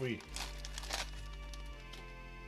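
Clear plastic bag crinkling as it is handled, two short rustles in the first second, over steady background music.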